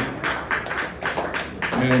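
A handful of short, unevenly spaced taps over low room noise, with a man's voice resuming near the end.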